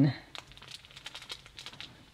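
Clear plastic bag of potting mix holding a rooted fig cutting crinkling softly as it is held and turned in the hand: a quiet, irregular scatter of small crackles.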